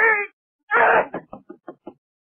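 A boy's voice crying out in pain as he is punished: a short wavering cry, then a louder harsher one just under a second in, followed by a run of about five quick, short sobs.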